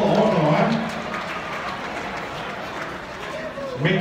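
A man's voice for about a second, then a low murmur of people in a large hall, and the voice again near the end; no music playing.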